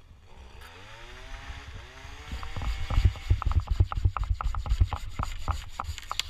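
Hand pruning saw cutting through a small ash branch: a few slower strokes with rising squeals from the blade, then fast, even strokes from about two seconds in.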